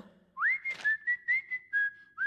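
Someone whistling a tune: a note slides up about half a second in, then a run of short, breathy whistled notes follows.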